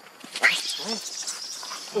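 Macaque calling: a sudden loud cry about half a second in, followed by shorter pitched calls.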